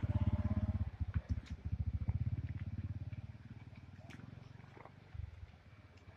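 A vehicle engine running with a rapid low pulsing, fading away over the first three seconds or so, with a few faint clicks after.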